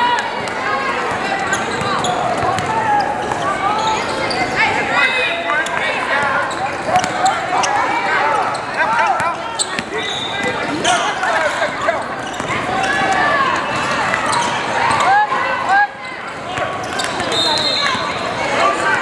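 Sounds of a basketball game on a hardwood court: a ball bouncing, with the overlapping voices of players and spectators echoing through a large hall.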